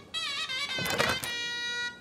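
A man singing a Turkish song line, then an instrument holding one steady note for about half a second near the end.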